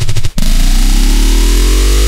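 Loud, heavily distorted noise music. A fast stuttering pulse drops out about a third of a second in, then a dense distorted drone rises steadily in pitch until it cuts off suddenly.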